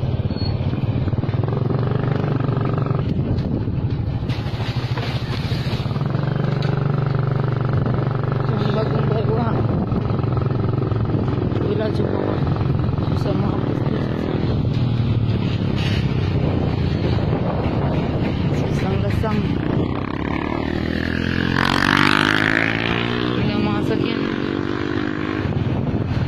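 Motorcycle engine running steadily under way, with a low continuous hum, briefly swelling louder with a rising and falling sweep late on.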